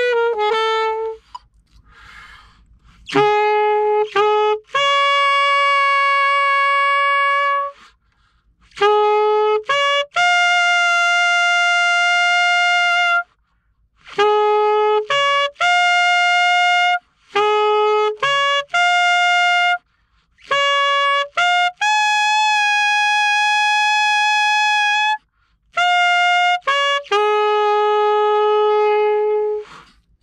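Alto saxophone overtone exercise: long held notes jumping up and down the harmonic series over a low fingering, with short breaks between them. A held note from the previous exercise ends about a second in, and the overtones begin after a short pause.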